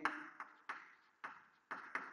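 Chalk striking and stroking a chalkboard as handwriting is written: a quick series of short, sharp taps, about six in two seconds, each dying away quickly.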